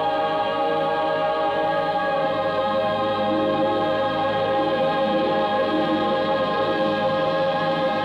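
Choral soundtrack music: a choir holding long, steady chords.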